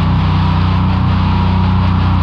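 Heavy metal song: a low, distorted chord held steadily, with no cymbals heard.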